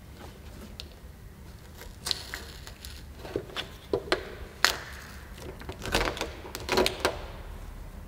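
Irregular sharp clicks and taps of hands working a plastic car badge off a tailgate with dental floss, a plastic pry tool and a cloth, until the badge comes free, over a low steady hum.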